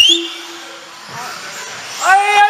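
Electric 4wd RC buggies racing on an indoor track: a sharp knock at the very start, then a brief rising whine and a low steady tone for about a second before the sound drops back to a quieter running background.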